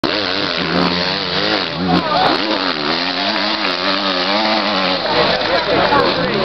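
Enduro motorcycle engine revving hard, its pitch rising and falling again and again as the rider works the throttle up a steep dirt climb.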